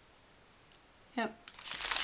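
Near silence, then near the end thin plastic bags of diamond-painting drills crinkling as they are handled, a quick crackly rustle getting louder.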